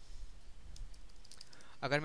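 Computer keyboard typing: a short run of light keystroke clicks as code is edited, with a man's voice starting near the end.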